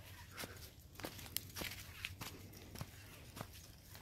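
Faint footsteps crunching through dry fallen leaves on a woodland trail, about two steps a second.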